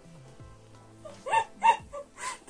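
A puppy barking twice in quick succession, short high-pitched yips over soft background music.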